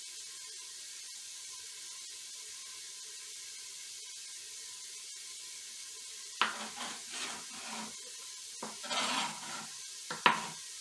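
Steady sizzle of food browning in a frying pan, then from about six and a half seconds in a few sharp knocks and scrapes of a chef's knife on a plastic cutting board.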